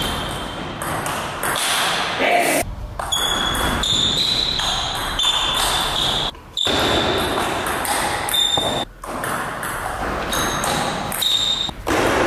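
Table tennis rally: a celluloid ball clicking off bats and table in quick exchanges, with voices in the hall.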